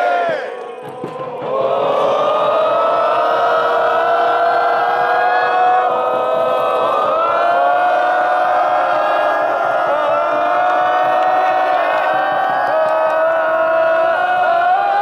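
Football supporters singing a chant together in a large crowd, in long held notes; the singing drops away briefly near the start, then picks up again.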